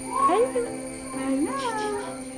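Drawn-out, sing-song "hi" greetings in a high voice, rising then falling in pitch, the way one talks to a baby, over steady background music.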